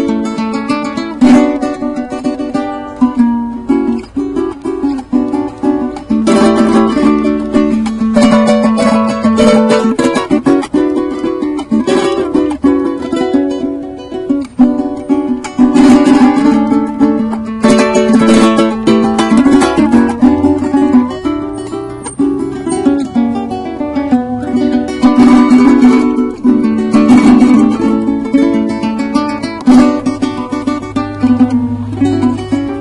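Venezuelan cuatro, a small four-string nylon-strung guitar, played solo: a picked melody with rapid runs over strummed chords, and frequent sharp rhythmic strokes.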